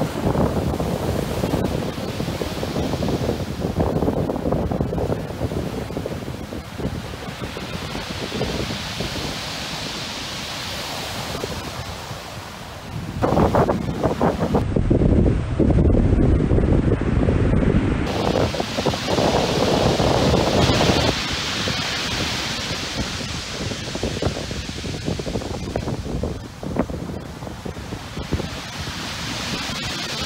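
Sea waves breaking and surf washing up a beach, under strong wind buffeting the microphone. It swells louder and deeper for several seconds in the middle.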